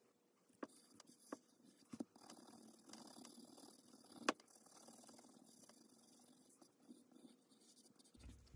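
Faint pencil-on-paper sounds: a graphite pencil making short scratchy strokes and light taps, with scattered small ticks and one louder click about four seconds in.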